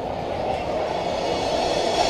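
Marching band percussion playing a sustained rattling roll between brass phrases, swelling toward the end.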